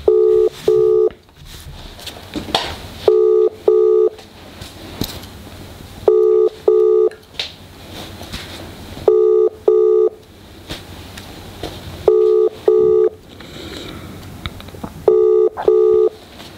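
Telephone ringback tone played over a phone's speaker on an outgoing call: a double ring, two short beeps close together, repeating every three seconds, six times. The call is ringing out and has not been answered yet.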